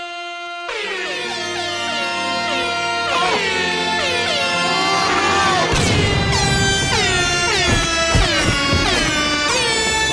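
Repeated air horn sound-effect blasts layered over music, each blast dipping in pitch as it starts. A heavy bass beat comes in about six seconds in and the blasts keep coming over it.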